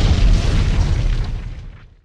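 Explosion sound effect for a logo animation: a deep boom that is already at full strength and then fades away over about two seconds, dying out near the end.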